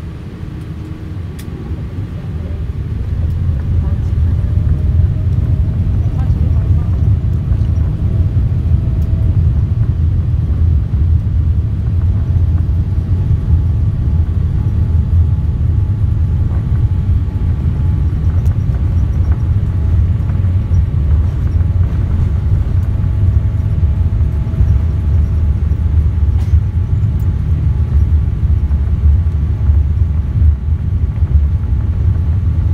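Boeing 787-8's turbofan engines heard from inside the cabin over the wing, spooling up to takeoff thrust with a rising whine about two to four seconds in, then a loud, steady low roar through the takeoff roll.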